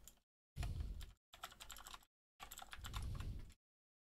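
Typing on a computer keyboard: three short runs of rapid keystrokes that stop about three and a half seconds in.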